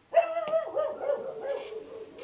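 A house dog barking to announce a delivery at the door: one drawn-out, wavering call that starts just after the beginning and trails off.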